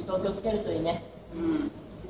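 A woman's voice talking in short phrases.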